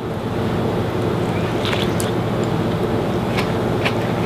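A steady mechanical hum with a rushing noise, broken by a few faint clicks.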